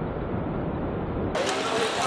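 Bus engine running with a steady, muffled low rumble. About a second and a half in, it cuts abruptly to street noise with faint voices.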